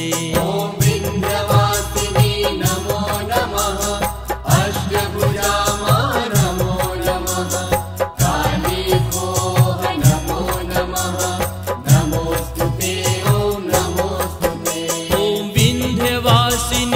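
Bhojpuri devotional music (devi geet): an instrumental passage between the chanted lines of a hymn, with a steady percussion beat under a wavering melody.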